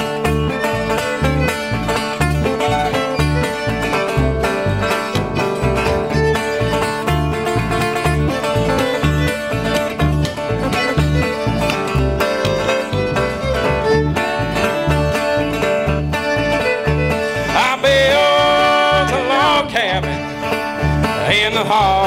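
Bluegrass string band playing an instrumental break: a plucked upright bass keeps a steady beat under acoustic guitar, fiddle and other plucked strings. Near the end a high, wavering melody line comes forward over the band.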